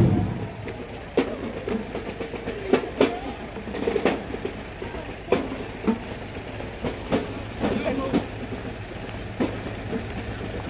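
A marching band's playing cuts off right at the start, leaving indistinct outdoor chatter and scattered, irregular sharp clicks and knocks.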